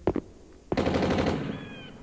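Two quick sharp clicks, then a sudden loud burst that fades away over about a second.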